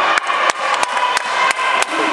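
A quick, uneven run of sharp knocks, about seven in two seconds, over the murmur of a crowd in a gym.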